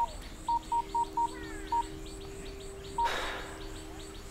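Mobile phone keypad beeping as a number is dialled: short beeps at one pitch, six in quick succession and one more about three seconds in, followed by a short burst of noise. Faint bird chirps and a steady low hum lie underneath.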